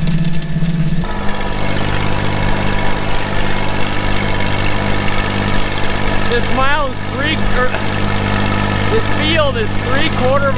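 Tractor engine running steadily while it pulls a 4-row planter, heard first close to the planter and, after a change about a second in, from the operator's seat. A man's voice rises and falls briefly, without clear words, a little past the middle and again near the end.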